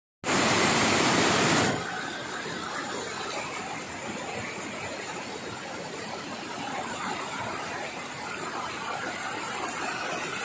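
Shallow river water rushing over rocks in rapids: loud and close for the first second or two, then a steadier, quieter rush.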